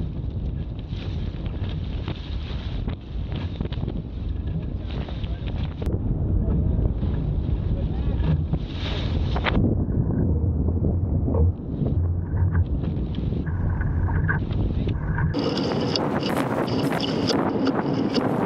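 Wind buffeting the microphone over water rushing and splashing along the hull of a small wooden lug-rigged sailboat under sail in a fresh breeze. About fifteen seconds in, the deep rumble drops away, leaving a brighter, crackly hiss.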